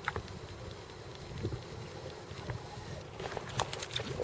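Wind rumbling on the microphone over small waves slapping a boat hull, with a quick run of faint clicks near the end.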